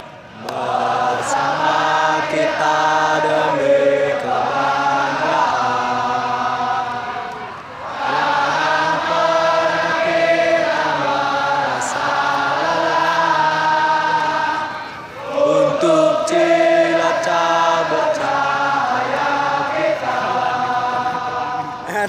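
A large crowd of football supporters singing their club anthem together in unison, in long phrases with two short breaks.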